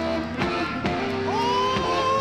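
Live electric blues band playing an instrumental passage of a slow blues, with a lead guitar line over the band. About a second in, a note is bent up and held.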